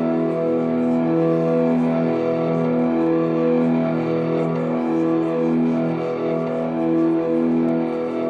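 Slow ambient drone music played live: a steady low held tone with higher sustained notes swelling in and out every second or two over it.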